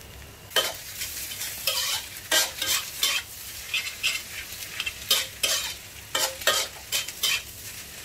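Metal spatula scraping and turning fried rice in a large metal wok over a light sizzle. The scrapes come unevenly, about twice a second.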